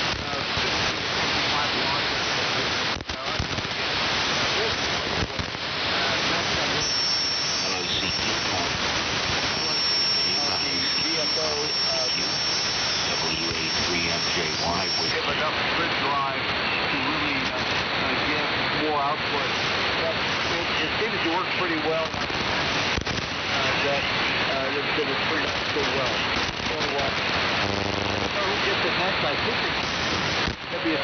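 Shortwave AM receiver on the 75-metre band giving out loud, steady static with crackling crashes, and a weak, fading voice barely audible underneath. A thin high whistle is held for several seconds around the middle. This is band noise swamping the signals in very poor propagation, which the operator puts down to a solar storm.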